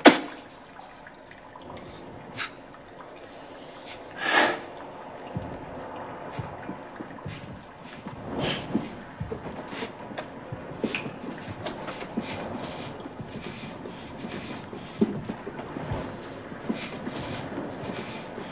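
Scattered, irregular faint clicks and small knocks over a low, steady room ambience, the most prominent one about four seconds in.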